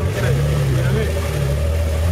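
Off-road 4x4 engine running at low revs as the vehicle crawls through deep mud. Its note rises slightly about half a second in, holds for about a second, then drops back.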